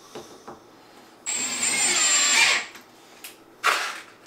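Cordless drill-driver running for about a second and a half as it drives a screw through a metal shelf bracket into the wall, with a high whine over the motor noise. A short second burst of the drill comes near the end.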